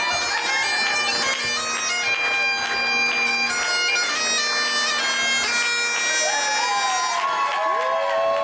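Bagpipes playing a tune over their steady drone. Near the end, crowd voices rise over the pipes.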